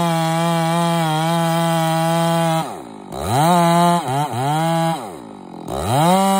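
Two-stroke chainsaw with a long bar cutting steadily at full throttle in the back cut of a large tree being felled. About halfway through the throttle is let off and the revs drop, then it is revved up again with a couple of quick dips, drops once more, and climbs back to full revs in the cut near the end.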